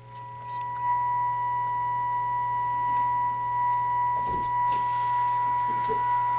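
Steady, pure test tone from an RCA T62 tube radio's speaker: the signal generator's modulated 455 kc signal being received during IF alignment. The tone swells up in the first second, then holds level over a low steady hum.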